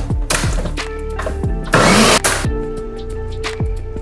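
Background music with a steady bass beat. A countertop blender runs in short bursts: a brief one just after the start and a louder one of under a second about two seconds in.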